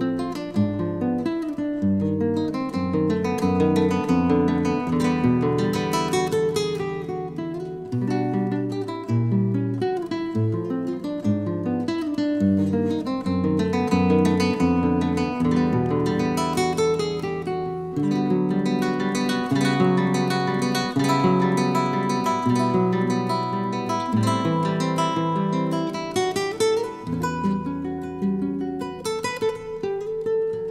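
Recorded music led by acoustic guitar, with plucked and strummed notes and chords running on steadily.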